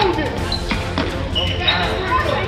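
A basketball being dribbled on a hardwood gym floor, with a few sharp bounces about a second in. Voices carry in the gym behind it.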